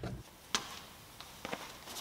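Quiet room tone with one sharp click about half a second in and a couple of fainter ticks near the end.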